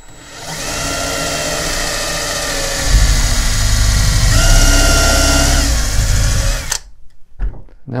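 Cordless drill with a countersink bit boring a pilot hole through the end of a plywood shelf into the upright. The motor winds up to a steady whine, loads up and gets louder as the bit cuts into the wood about three seconds in, shifts pitch briefly, then stops about a second before the end.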